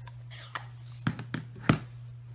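A plastic ink pad case is flipped open with a sharp click and a brief high squeak about half a second in. Then come three light knocks of plastic against the craft mat as the pad and the acrylic stamp block are handled.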